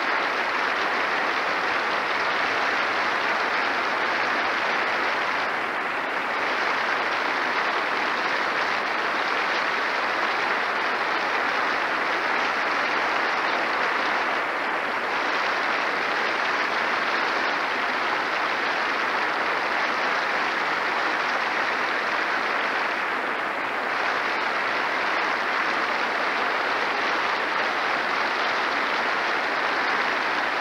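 A large theatre audience applauding steadily in a long standing ovation, easing slightly a few times.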